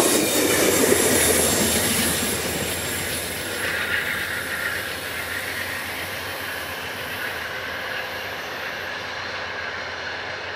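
Amtrak stainless-steel passenger cars rolling past close by on their wheels and rails, the sound fading steadily as the train moves away. A high wheel squeal on the curve comes in about three and a half seconds in.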